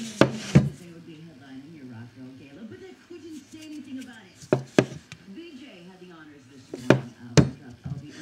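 A steel bayonet in its scabbard knocking against a wooden workbench as it is set down and shifted: three pairs of sharp knocks, each pair about half a second apart, the first right at the start, then about four and a half seconds in and near the end.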